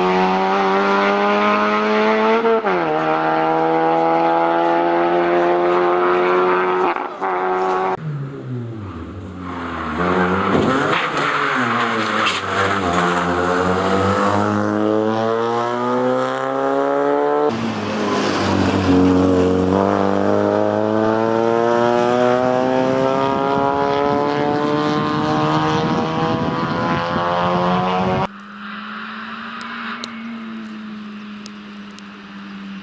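Citroën C2 VTS rally car's four-cylinder engine under hard acceleration, its note climbing through each gear and dropping sharply at the upshifts, with a lift and falling revs for a corner partway through. The sound jumps abruptly three times between roadside spots, ending on a quieter, steadier engine note as the car approaches from further off.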